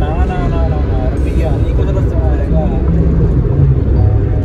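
Loud, steady road and engine noise inside a moving car's cabin, heaviest at the low end, with a voice heard in short stretches over it.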